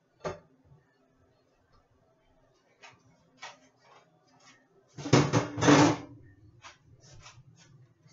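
Kitchen handling sounds as a metal cake pan is lifted off a cake turned out onto a plate: a sharp knock just after the start, a few light clicks, then a loud clatter lasting about a second around five seconds in, followed by faint rattles.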